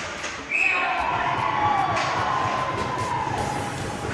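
Ice hockey play heard from behind the glass: sharp knocks of sticks and puck against the boards and glass, with a long pitched call starting about half a second in and sliding slowly lower in pitch.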